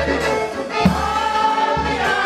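Polish village folk band with fiddle playing dance music while a group of women sing along, over a steady low beat about once a second.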